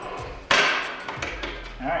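One sharp metallic clack as the Mark 19's charging handle assembly is struck by hand and slides into place on the receiver, ringing briefly before it fades.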